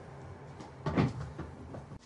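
A sudden clatter of knocks, loudest about a second in, followed by a few lighter knocks, over a low steady hum.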